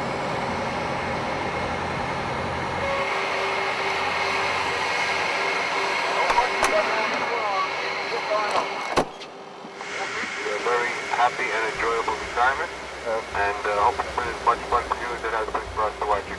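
Concorde's jet engines running as the airliner taxis: a steady whine over a hiss. The sound breaks off briefly about nine seconds in and then resumes.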